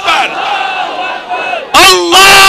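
A large crowd shouting a slogan back in unison, many voices at once, in answer to a chant leader. Near the end a much louder chanted call through the loudspeakers starts again.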